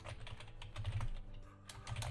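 Typing on a computer keyboard: a quick, steady run of key clicks, several a second, as a line of text is entered.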